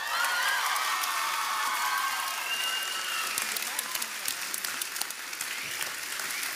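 Audience applause right after a song ends, a steady patter of many hands clapping with whoops and shouted cheers rising over it in the first few seconds.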